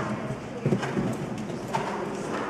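A show-jumping horse's hooves on the arena footing as it clears a fence: a few uneven heavy thuds, at about the start, just under a second in and near the end, as it takes off, lands and canters on.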